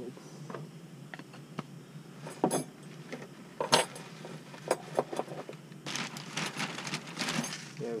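Small items being handled and set down: scattered clinks and knocks, then a plastic bag crinkling for about a second and a half near the end.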